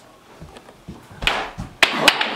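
A ball rolled along a rug into a floor Skee-Ball game: a few soft low thumps, then a louder knock a little over a second in and a sharp clack just before the end as it strikes the game's ramp and target.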